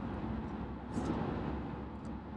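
Steady road and engine noise of a moving car, heard from inside the cabin while driving on a highway.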